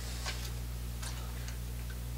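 Low steady electrical hum in a quiet room, with a few faint, irregular clicks.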